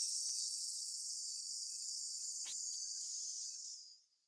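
One long, steady 'sss' hiss breathed out slowly through the teeth as a breath-control warm-up for singing, tapering off just before the end.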